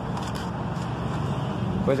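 Steady low rumble of a car's running engine and cabin noise, heard from inside the car.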